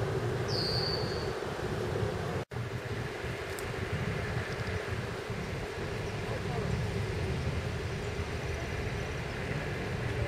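Steady outdoor rumble and hiss, with a single short high whistle falling in pitch about half a second in. The sound drops out for an instant about two and a half seconds in.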